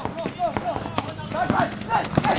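Paintball markers firing several sharp, scattered pops, the clearest about a second in, under players shouting calls to each other across the field.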